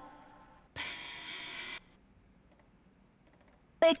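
A singer's breath between two sung phrases of a lead vocal recording, about a second long. It has been kept but made quieter so the vocal still sounds natural. Then near silence with a few faint clicks.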